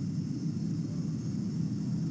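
Steady low rumble of room background noise, even throughout with no distinct event.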